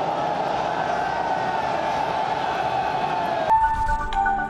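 Stadium crowd cheering in a dense, steady din with a held tone that slowly rises in pitch. About three and a half seconds in it cuts off abruptly and a short electronic outro jingle begins.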